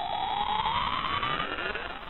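Electronic rising-sweep sound effect of a loading bar filling: one synthetic tone climbing steadily in pitch over a hiss, fading toward the end.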